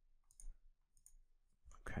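A couple of faint computer mouse clicks, the first about half a second in, as a dropdown option is picked and the form is saved.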